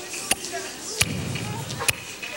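Speech with sharp percussive hits, about one a second.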